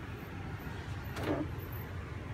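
Steady low background rumble, with one short, brighter noise a little past a second in.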